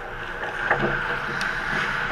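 Ice hockey play close to the goal: skate blades scraping and carving on the ice over a steady rink hiss, with two sharp clacks of stick and puck partway through.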